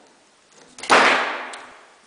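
Loose backsplash tile being pried off a flood-damaged wall: one sudden crack and clatter about a second in, dying away over most of a second.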